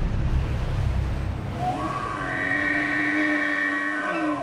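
Logo sting sound effect: a deep rumble that fades out about two seconds in, while a sustained, whistle-like chord of steady tones swells in and holds.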